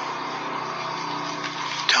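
A steady low hum with faint held tones above it, unchanging, until a man's voice starts at the very end.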